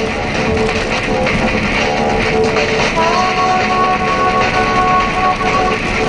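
Music playing loudly from a car radio inside a BMW E36's cabin, with the car's engine running beneath it.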